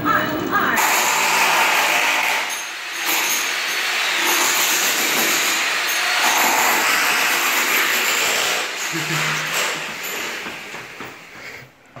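Power tool running loudly on the bathroom wall, a noisy grinding-drilling sound with a short dip about three seconds in, fading near the end.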